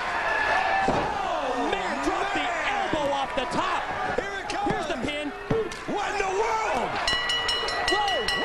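A single heavy slam on the wrestling ring about a second in: a wrestler's body landing from the top rope onto the ring. It is followed by a crowd of fans shouting and yelling.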